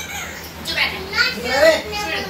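Speech: voices talking, high-pitched like a child's, picking up about half a second in.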